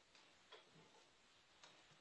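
Near silence: room tone with a few faint clicks, one just after the start, one about half a second in and one about a second and a half in.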